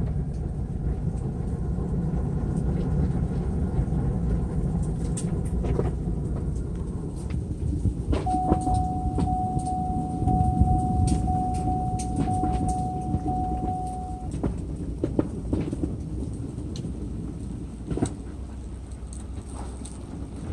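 Car running at low speed, a steady low engine and road rumble heard from inside the cabin. In the middle a run of beeps on one pitch sounds for about six seconds.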